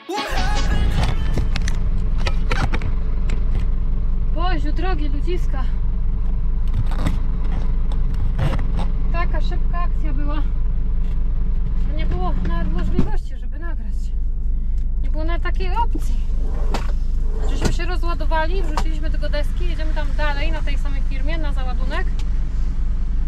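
Heavy truck's diesel engine running with a steady low drone, heard from inside the cab; the engine note shifts about halfway through. Voices talk over it on and off.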